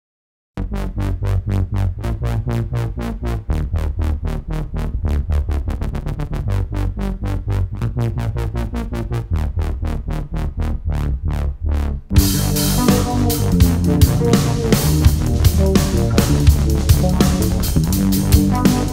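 Instrumental band music: a pulsing line of quickly repeated notes opens the piece. About twelve seconds in, a full drum kit with cymbals and the rest of the band come in together, and the music grows louder and denser.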